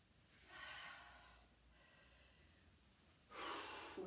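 A woman breathing from exertion: a soft breath out about half a second in, then a sudden, louder intake of breath near the end.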